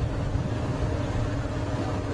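Steady low rumble of a fire engine's motor running, with a faint steady whine above it.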